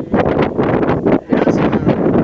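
Wind buffeting the microphone in loud, irregular gusts.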